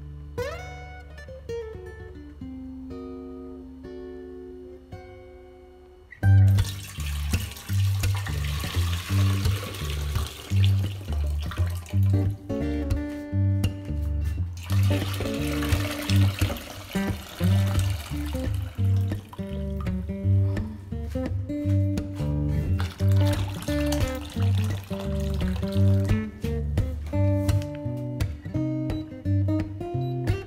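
Water poured from a glass jar of cucumbers into an enamel pot, in two spells of several seconds each: draining the scalding water off the packed cucumbers before the marinade goes in. Acoustic guitar music plays throughout.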